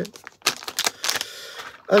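Clear plastic parts bag crinkling and crackling as it is handled, with a cluster of sharp crackles from about half a second to a second and a half in.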